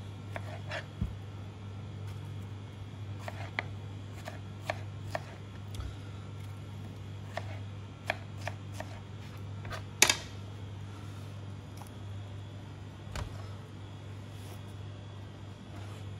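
Kitchen knife cutting strawberries into chunks on a plastic cutting board: irregular light taps of the blade on the board, with one sharper knock about ten seconds in. A steady low hum runs underneath.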